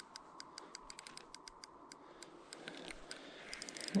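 Fishing reel ticking in a quick, uneven run of faint clicks while a hooked fish is played on the rod.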